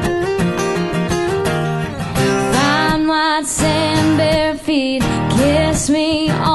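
Live acoustic country performance: a woman singing lead over two strummed acoustic guitars.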